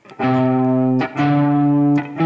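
Electric guitar playing two single picked notes, each ringing for under a second, the second a whole step above the first: the opening notes of a C major scale pattern at frets 8 and 10 of the low E string.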